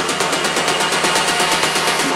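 Electronic dance music from a back-to-back DJ mix, with a fast, even run of ticks at about eight a second and the bass largely pulled out, as in a DJ transition.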